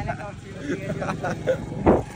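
Motorcycle engine running steadily while the bike is ridden, with scraps of voices over it.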